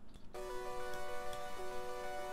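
Bell pad synth patch from a Korg Minilogue analog synthesizer holding a sustained chord, which starts about a third of a second in. One voice steps lower about a second and a half in.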